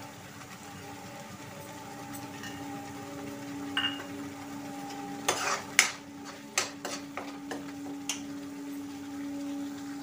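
A steel ladle stirs thick masala in a steel kadai, with a few sharp scrapes and clinks against the pan between about five and eight seconds in. Under it are a low sizzle of the frying paste and a steady hum.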